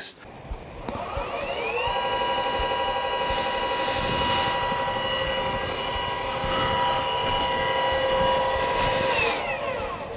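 Celestron Origin smart telescope mount's motors slewing, loud. The whine ramps up in pitch over the first couple of seconds, holds steady as several tones, then ramps down and stops near the end. It is heard from about two metres away.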